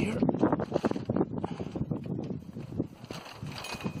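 Tyvek sail of a land yacht flapping and crackling in gusty wind, a quick irregular run of rustles and knocks that eases off near the end.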